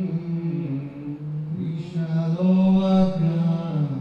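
A man singing a slow, chant-like melody in long held notes into a microphone.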